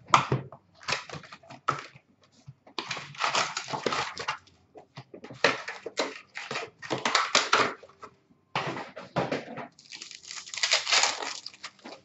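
Trading card pack wrappers being torn open and crinkled, and cards shuffled by hand, in irregular bursts of rustling with short pauses between them.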